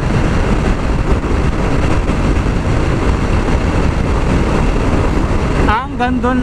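Yamaha NMAX 155 scooter held flat out at about 116 km/h, a steady rush of wind on the microphone over engine and road noise. The stock CVT has topped out and the speed no longer climbs.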